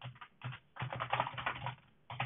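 Computer keyboard being typed on: a quick run of keystrokes entering a short terminal command, with a brief pause about half a second in.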